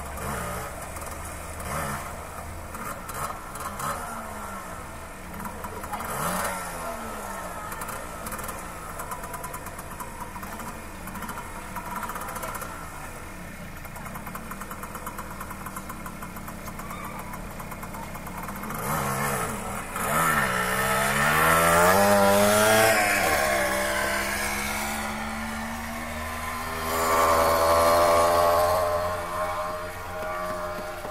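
Street traffic: motor vehicle engines running at low speed, their pitch rising and falling as they move. About two-thirds of the way in, a louder vehicle accelerates past, its engine note climbing and then dropping away. Another engine swells near the end.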